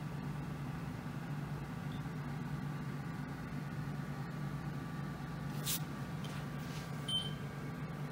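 Steady low hum of room background, with a faint click about six seconds in and a brief, faint high beep near the end.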